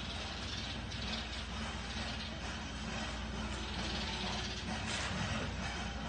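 Steady low hum and hiss of background noise inside a large building.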